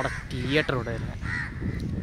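Crows cawing, with short calls about half a second in and again a little after a second, over a man's voice.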